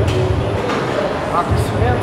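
Men talking, with one short 'ah', over a low bass beat pulsing about once a second from background music.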